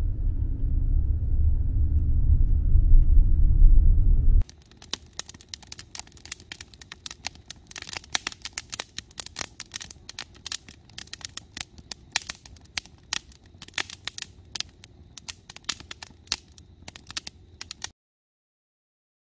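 Low, steady road rumble inside a moving car for about four seconds, then it cuts to a wood campfire crackling, with many irregular sharp pops from the burning split logs.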